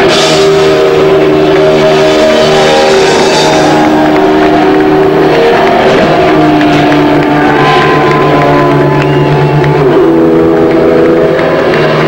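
Live rock band's electric guitar holding loud, sustained chords through the amplifier, the notes shifting every few seconds, with no drum beat.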